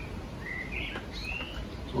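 A bird chirping: a few short notes that glide up and down in pitch, over a steady low background rumble.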